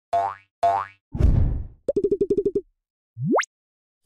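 A string of cartoon sound effects for an animated channel logo: two short tones that bend up in pitch, a low rumbling burst, a quick run of about eight identical blips, then a short whistle sliding steeply upward.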